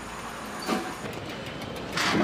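An automated underground bicycle-parking machine running as it takes in a bicycle: a steady mechanical rumble, with a short cluster of clicks and clunks under a second in.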